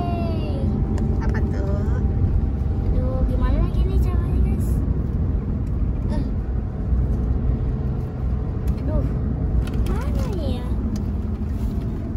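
Steady low rumble of a car heard from inside its cabin, with a few faint short voice sounds now and then.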